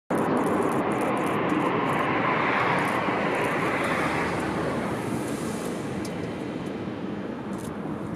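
Jet airliner engine noise, a steady rushing sound that starts suddenly and slowly fades away.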